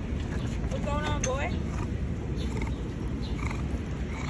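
Steady city street noise, with one short, high-pitched vocal sound that bends up and down about a second in.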